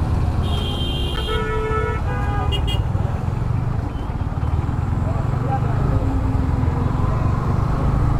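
Vehicle horns honking, several overlapping notes, for about two seconds near the start. Under them runs the steady low rumble of a Yamaha MT-15 motorcycle's single-cylinder engine and the surrounding road traffic.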